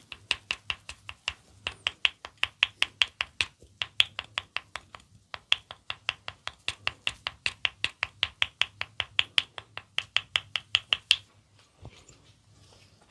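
Quick wooden clicking from a red wooden ear-massage tool worked at the ear, about five sharp clicks a second in runs with brief pauses, stopping about a second before the end.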